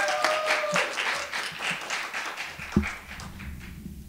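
Audience applauding after an introduction, the clapping fading out over about three seconds, with a held steady call over it at the start. A single thump near the end is followed by a low rumble.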